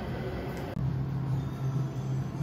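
Steady low mechanical hum of commercial kitchen equipment. The sound drops out abruptly a little under a second in and comes back with the hum clearer.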